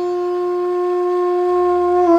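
A long bass bansuri, the Indian bamboo flute, holding one long steady note that swells slightly.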